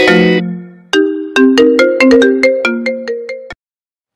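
Mobile phone ringtone playing a loud melody of quick, clipped notes, with a short break just after the start. It cuts off abruptly about three and a half seconds in, as the call is answered.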